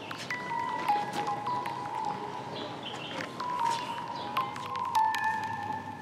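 Background music: a held melody line that steps slowly between a few notes.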